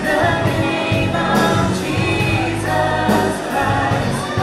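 Live church worship music: a group of voices singing over a band, with held sung notes and a steady bass line.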